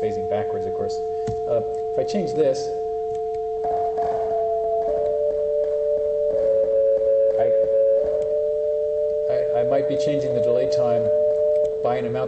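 Two steady electronic sine tones from a Pure Data delay-line pitch shifter: the original sinusoid and a pitch-shifted copy. The upper, shifted tone slides down in pitch about four seconds in and settles lower as the phasor driving the delay is changed. Clicks come through because the delay does not sweep over a whole number of cycles.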